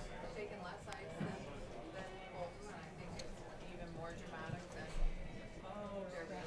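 Curling brooms sweeping the ice in front of a sliding stone, with voices calling in the arena. A low thump about five seconds in.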